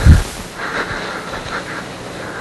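Audio of a recorded lecture video playing back through loudspeakers: a low thump right at the start, then a steady hiss of room noise with faint, indistinct sounds in it.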